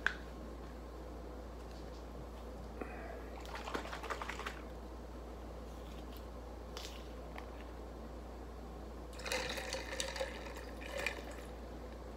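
Small sachets of michelada mix being torn open and squeezed into a tall glass: faint crinkling and short dribbles of liquid, about three seconds in and again near the end, over a steady low hum.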